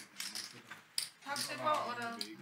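Poker chips clicking against each other as a player handles them at the table, a quick run of small clicks in the first second. A voice follows near the end.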